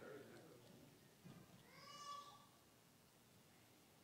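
Near silence: quiet hall room tone, with one brief, faint, high-pitched vocal call about two seconds in.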